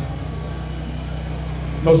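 A steady low mechanical hum, like an engine running, with faint outdoor background noise during a pause in speech.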